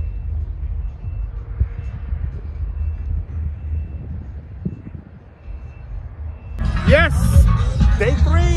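Low, gusting rumble of wind on the microphone. About six and a half seconds in it cuts suddenly to louder festival music and a man's voice.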